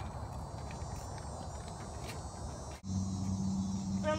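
A steady, high insect chorus over outdoor background noise. About three seconds in it breaks off suddenly and a low steady hum takes over.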